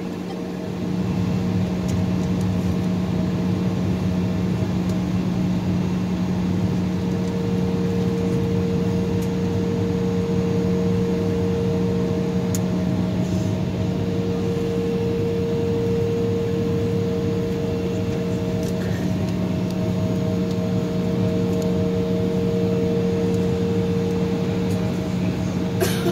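Cabin noise inside an Embraer E-175 taxiing on the ground: the steady hum of its GE CF34 turbofan engines at idle, with cabin air conditioning, holding a low drone and a couple of steady tones.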